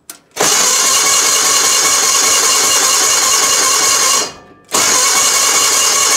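Gravely 817 garden tractor's engine being cranked by its electric starter, loud and steady, in a long run of about four seconds, a brief pause, then a second run. The engine turns over but does not catch and fire.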